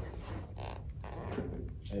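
Soft rustling of a cotton dust bag being handled as a white leather sneaker is pulled out of it, in a few short bursts, with a faint voice near the end.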